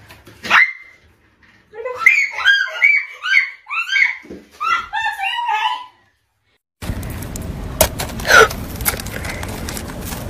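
High-pitched, gasping laughter in a quick run of short bursts, after a brief rising cry near the start. It stops about six seconds in.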